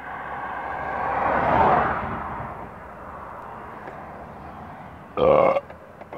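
Steady background noise that swells and fades about a second and a half in. Near the end comes a short, loud, throaty vocal sound from the person filming.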